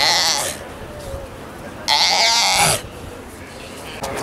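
Galapagos sea lion pup calling twice: a short call at the start and a longer one about two seconds in.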